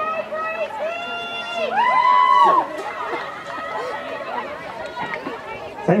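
High-pitched young voices shouting and calling out over crowd chatter, with drawn-out calls loudest about two seconds in.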